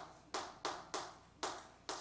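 Chalk writing on a chalkboard: about six sharp taps of the chalk in two seconds, one per stroke, each trailing off briefly.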